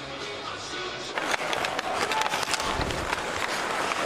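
Ice hockey arena game sound: music at first, then about a second in a louder mix of crowd noise and sharp clicks and clacks of sticks, puck and skates on the ice.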